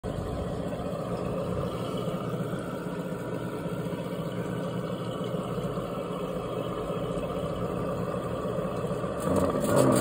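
Hobby-grade RC sound module playing a simulated engine idle through the model's small speaker: a steady low engine note that grows louder just before the end.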